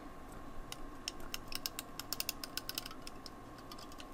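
Glue tape runner pulled along paper, giving a quick run of small clicks as its spool turns and lays down adhesive. The clicking starts about a second in and stops shortly before the end.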